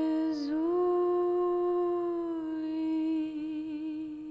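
A woman's voice holds one long wordless note. It dips and scoops back up about half a second in, then holds steady and slowly fades. A sustained keyboard chord rings beneath it.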